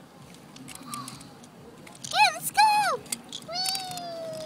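A child's voice giving two short, high-pitched imitation meows about two seconds in, with a few light clicks of plastic toys being handled. Near the end a long held tone begins and slowly falls in pitch.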